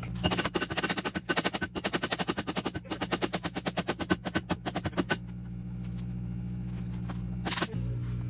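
Power impact wrench hammering in a rapid rattle for about five seconds, then one brief burst near the end.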